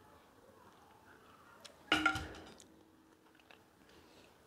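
A spatula is set down on the table with a single short clatter about two seconds in, leaving a faint ring that fades. Otherwise quiet.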